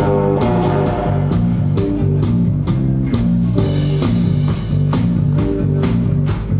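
Live psychedelic rock band playing: electric guitars and bass guitar holding sustained notes over a drum kit keeping a steady beat of about three hits a second.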